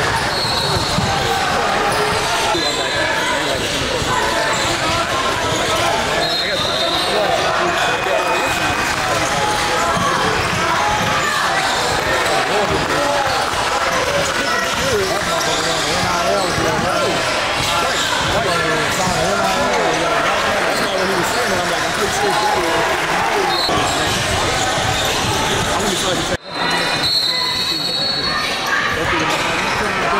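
Basketball being dribbled on a hardwood gym court, with short sneaker squeaks and players and spectators calling out over a steady background of voices in the hall. The sound drops out briefly near the end.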